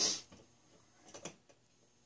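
A short hiss-like burst right at the start, then a few light metallic clicks a little over a second in: an adjustable wrench working a small fitting on a model steam engine.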